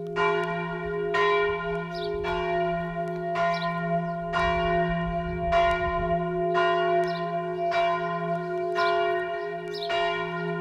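A church bell tolling steadily, about one strike a second, each stroke ringing on into the next.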